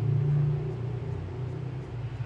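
A steady low rumble, a little louder in the first second.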